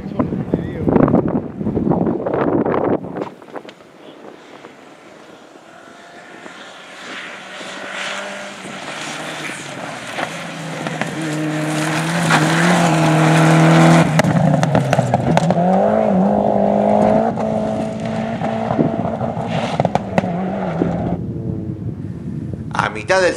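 Mitsubishi Lancer Evolution rally car's turbocharged four-cylinder engine driven hard on gravel. It grows louder as the car approaches and passes close, then revs up and down through gear changes.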